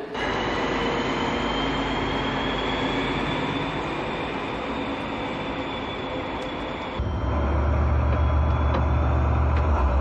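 Railway station sound of a train running, with faint high whining tones. About two-thirds of the way through it cuts suddenly to a loud steady low drone of a locomotive, heard from inside the cab.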